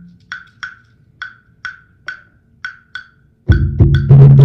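Student world-drumming ensemble: sharp woody clicks keep a steady beat about twice a second, then the drums come in loud with deep tones about three and a half seconds in. Heard as video playback over the room's speakers.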